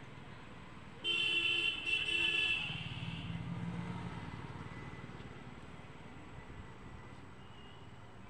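A vehicle horn sounds two blasts back to back about a second in, followed by a vehicle's low engine rumble that fades away.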